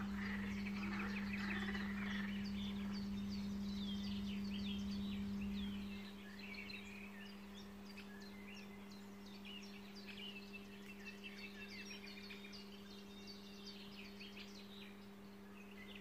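Small birds chirping and singing over a steady low hum; a low background rumble stops about six seconds in.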